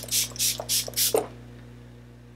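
MAC Fix+ setting spray pumped in quick succession onto the face: about four short hissing spritzes in the first second, roughly a quarter second apart.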